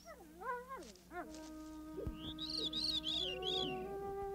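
Wolf pups whining and yelping in the first second or so, in short calls that slide down in pitch. Then background music of long held notes takes over, with a high warbling figure repeated about four times near the middle.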